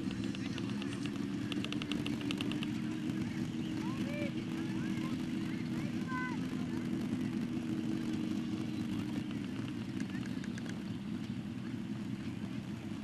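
Small engine of a portable fire pump running steadily at one pitch, growing fainter about three-quarters of the way through.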